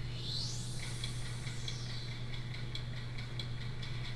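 Faint soundtrack of a music video's opening: a whoosh that rises and then falls in pitch, followed by quick, even ticking at about four a second. A steady low hum lies underneath.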